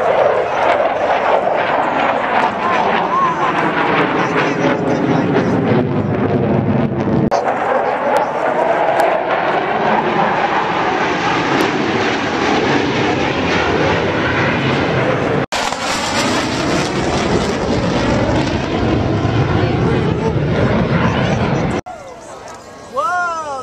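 Loud, continuous jet noise from a formation of four military display jets passing overhead, with a swirling, phasing rush as the sound sweeps. It breaks off sharply at a couple of cuts.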